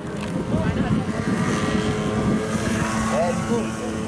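BMW M2 (F87) safety car's 3.0-litre turbocharged inline-six idling at the tailpipes with a steady low hum, with people talking in the background.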